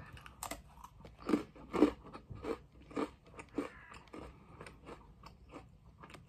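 A person biting into a chocolate-coated Fox's Party Ring biscuit with a sharp snap, then crunching and chewing it, about two crunches a second, growing softer toward the end.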